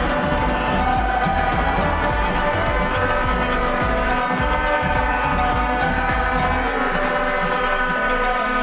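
Music with sustained chords over a steady beat.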